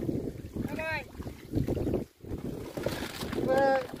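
Wind rumbling on the microphone, with two drawn-out shouted calls from men's voices, one about a second in and one near the end, part of a repeated work chant called out while hauling a fishing net.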